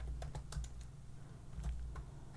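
Computer keyboard typing: a handful of faint, irregularly spaced key clicks.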